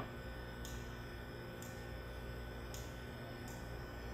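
Quiet room tone: a steady low hum with a faint, steady high tone above it.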